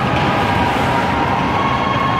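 An ice rink's goal horn sounding a steady tone for a goal, over an even wash of crowd noise.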